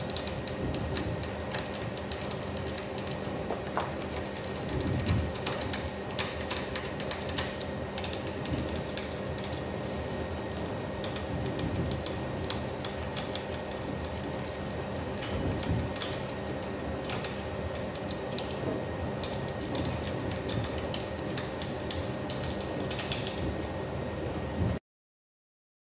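Screwdriver tightening a screw on a plastic beam detector and its pole bracket, with the housing handled by hand: a run of small irregular clicks and taps, busiest near the end, over a steady faint hum.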